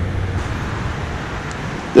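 Steady drone of nearby highway traffic, an even rushing noise with a low hum underneath.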